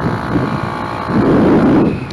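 Tuned Gilera DNA 180 two-stroke scooter running along the road, heard under heavy wind rumble on the camera's microphone, the rumble swelling about a second in.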